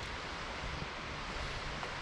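Steady rushing of a river's flowing current.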